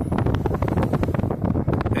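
Car driving along a street: road and engine noise with wind buffeting the microphone.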